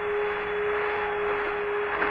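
Hiss of the Apollo 11 air-to-ground radio link, with one steady tone held underneath.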